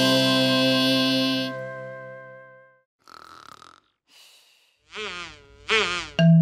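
The last held chord of a gentle children's song fades out over the first few seconds. Then come cartoon sleeping sounds: two soft breathy snore-like inhales, then two sighing voice sounds that fall in pitch, the second louder, just before the end.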